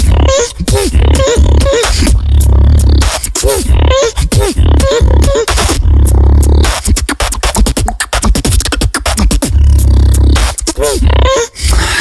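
Solo beatbox performance: deep sustained vocal bass under sharp clicks and snare-like hits, with short arching pitched hums repeating above it. For a few seconds after the middle the bass drops back and the beat turns into fast, dense clicky percussion before the bass returns.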